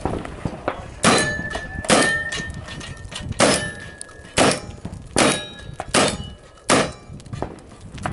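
Seven gunshots fired at a steady pace, roughly one every 0.8 seconds, each followed by the ring of a struck steel target.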